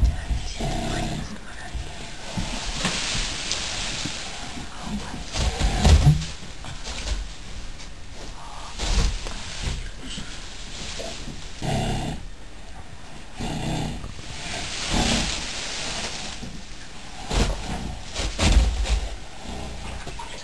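Irregular low grunts and heavy breaths every few seconds from a large animal giving birth as it lies in straw.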